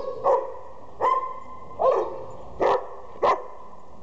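A dog barking five times, short barks about a second apart.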